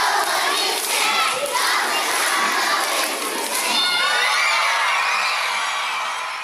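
A large crowd of children shouting and cheering all together, steady and loud.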